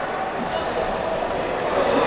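Steady crowd noise in an indoor sports hall: a murmur of voices with the hall's echo.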